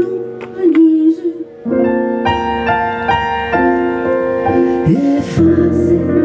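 A woman singing live with keyboard accompaniment. A short sung phrase dips away a little after a second in, then sustained keyboard chords change every half second or so, and the voice slides back in near the end.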